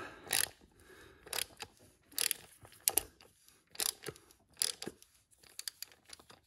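A ratchet driving a cap-type oil filter wrench gives a series of sharp clicks, about one a second, while loosening the engine's oil filter housing cap.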